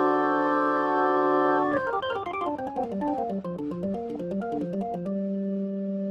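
Korg portable organ with a Hammond-style sound. A full chord is held, then about two seconds in a fast run of notes tumbles downward and winds back up, settling on a held low chord near the end.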